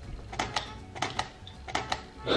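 Several short, light clicks and taps in small quick clusters, made while a hand is set down and repositioned on a sheet-covered kitchen counter.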